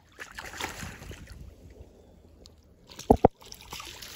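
A released bowfin splashing and thrashing at the surface of pond water as it swims away. About three seconds in come two quick low thumps close together, the loudest sounds here.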